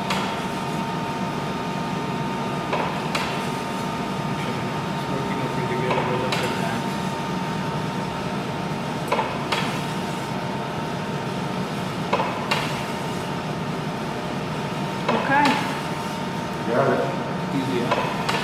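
Hand-cranked flywheel meat slicer cutting cured ham: short knocks and clicks in pairs about every three seconds as each stroke carries the ham past the blade, over a steady hum.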